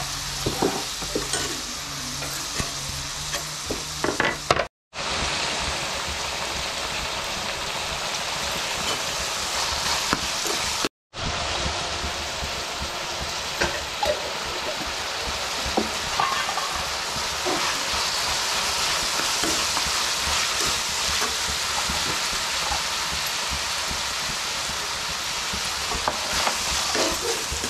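Chopped tomatoes, green chillies and garlic sizzling steadily in hot oil in a metal kadai, with a steel spoon scraping and clinking against the pan as they are stirred, most often in the first few seconds. The sound breaks off to silence twice, briefly.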